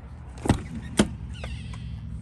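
A truck's side storage compartment door being opened: its latch gives two sharp clicks about half a second apart, then the door swings up on its gas strut with a short rasp. A steady low hum runs underneath.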